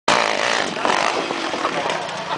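Yamaha 450 four-stroke single-cylinder dirt bike, fitted with nitrous, running as it rides toward the hill, mixed with crowd voices.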